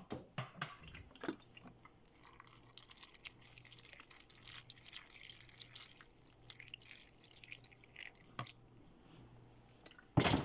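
Food in a pot of wet curry being worked with a plastic spatula: a few sharp clicks and knocks at first, then several seconds of faint, wet crackling and dripping, and one more knock near the end.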